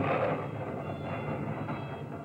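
Storm sound effect on a film soundtrack, played over a TV in a hall: a loud, rushing rumble of wind that is loudest at the start and eases off a little.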